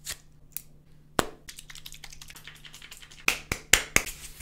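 Sharp small clicks and taps of a metal safety razor being handled as a razor blade is fitted into its head: a loud click about a second in, then a quick run of four clicks near the end.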